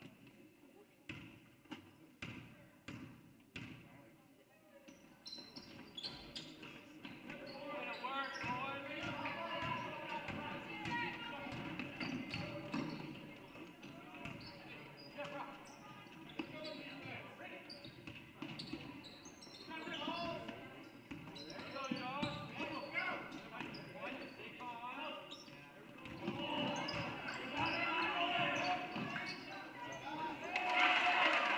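Basketball bounced on a hardwood gym floor at the free-throw line, several bounces about two a second. Then play resumes, with voices calling out and further knocks and bounces echoing in the gym.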